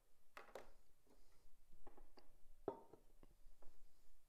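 A few faint, irregular clicks and brief soft noises over low room tone.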